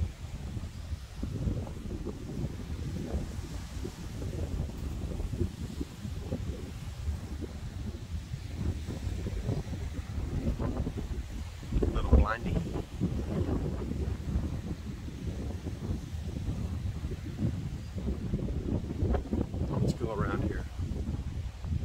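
Sea breeze buffeting the microphone: a continuous, gusty low rumble, with a louder burst about twelve seconds in.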